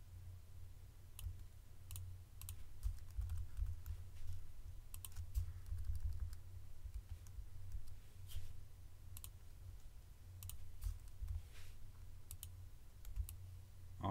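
Irregular clicks of a computer mouse and keyboard, a few every second, over a steady low hum.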